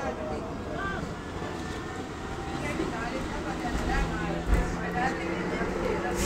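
Inside a moving Volvo B10R-55 city bus: the diesel engine and road noise run under passengers' chatter. A steady engine drone comes up in the second half, and there is a single low thump about four and a half seconds in.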